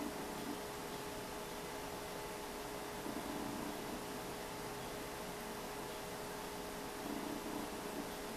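Steady background hiss with a faint constant hum: room tone with no clear event, and a few faint soft swells near the start, about three seconds in and near the end.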